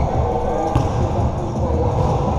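A basketball bouncing on a hard court, with one sharp bounce a little under a second in, over a steady background of players' voices.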